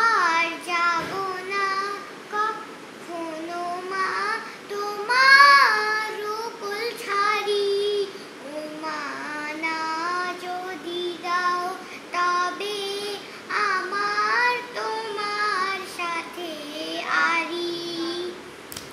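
A young girl singing a song on her own, without accompaniment, in phrases of held and sliding notes.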